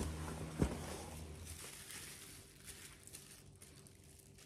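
Handling and rustling of plastic wrapping and a cardboard box as a small action figure is taken out and unwrapped, with one sharp click about half a second in.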